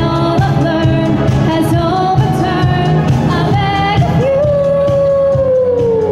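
A pop band playing live with a singer. About four seconds in, the voice holds one long note that slides down in pitch.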